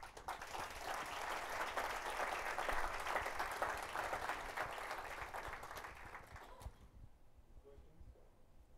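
Audience applauding: a dense patter of many hands clapping that tapers off and stops about seven seconds in.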